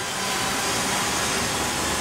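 A steady hissing rush of background noise, even and unchanging throughout.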